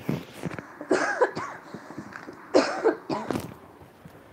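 A person coughing in two short bouts, about a second in and again about two and a half seconds in.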